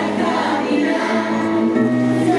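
A group of children singing a hymn together, holding sustained notes.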